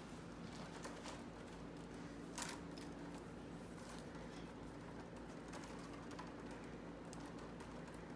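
Faint rustling and light clicks of willow rods being twisted and woven around upright willow stakes, with one sharper click about two and a half seconds in. A steady low hum runs underneath.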